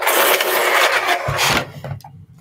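Electric pencil sharpener grinding a coloured pencil, a loud even burr that starts suddenly and cuts off after about a second and a half.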